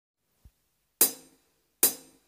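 Start of a karaoke backing track: two separate drum-and-cymbal hits, about a second in and just before the end, each dying away quickly, after a faint low thump.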